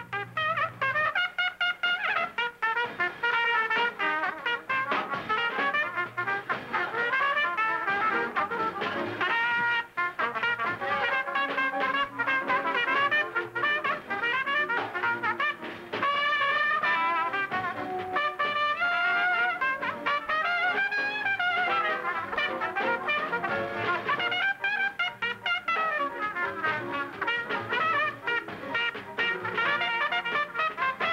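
Two jazz trumpets in a cutting contest, trading choruses on a popular melody and challenging each other. They play fast runs that rise and fall, with no break in the playing.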